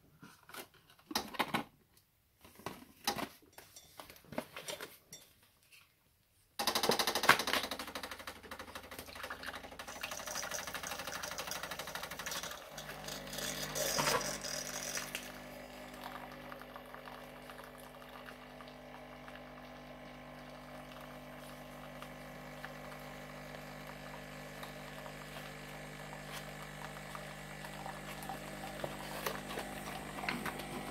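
A few light knocks, then about six seconds in a Bosch Tassimo Vivy 2 pod coffee machine starts brewing a milk T-disc: its pump runs with a hissing spray of liquid into a mug, settling after about six more seconds into a steady pump hum as the stream keeps pouring.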